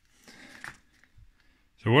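A brief faint rustle with a small click about half a second in, then a man starts speaking near the end.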